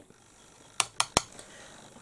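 Three sharp clicks about a fifth of a second apart, about a second in, over faint room tone.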